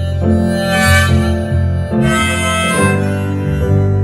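Harmonica and piano playing an instrumental passage after the last sung line of the song, the harmonica holding chords that change about every second over steady low piano notes.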